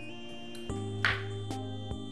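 Background music of soft, sustained tones that shift in pitch, over a few light clicks of a knife cutting through a pointed gourd onto a wooden cutting board.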